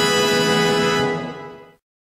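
Intro music ending on a long held chord that fades away about a second and a half in.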